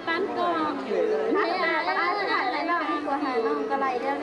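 Several voices talking over one another, a babble of chatter from a group of people.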